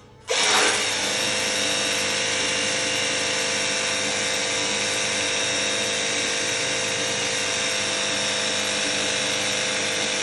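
A 20-volt cordless battery pressure washer switches on about a third of a second in, then its motor and pump run steadily and loud.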